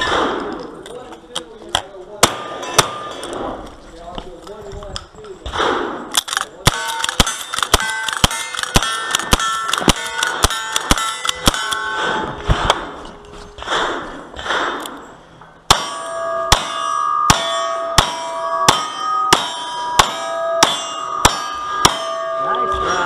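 A string of gunshots at steel targets, each hit ringing out as a metallic clang. First comes a fast run of rifle shots over about six seconds. After a short break comes a steady run of about ten revolver shots, a little over half a second apart.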